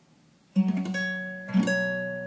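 Acoustic guitar playing a barred B minor 9 chord: struck twice about a second apart, each time left to ring out.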